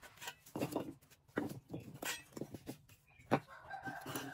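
Bricks being lifted off and set down on a concrete floor beside cement castings, heard as a run of irregular knocks and scrapes.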